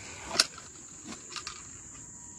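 A steady high-pitched insect trill in the background, with one sharp click a little under half a second in and two fainter ticks later.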